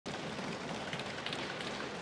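Steady crowd noise of a packed parliamentary chamber: many members' voices and movements blending into an even hubbub.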